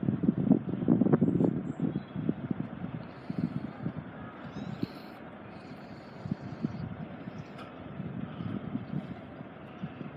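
Wind buffeting the microphone, in gusts that are strongest over the first two seconds and then ease to a low, steady rumble.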